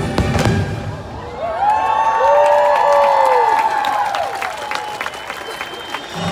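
Fireworks finale: a dense run of bangs in the first half-second, then a crowd cheering and whooping with voices sliding up and down, over show music and a few scattered cracks.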